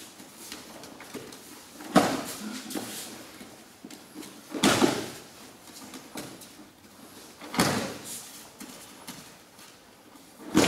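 Three heavy thuds on a mat, about three seconds apart: an aikido partner being thrown and landing in a breakfall each time, with a short rustle after each landing.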